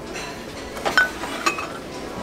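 Small glass and ceramic pieces clinking against each other and a metal shelf: three light clinks about a second in, the middle one the loudest with a short ring.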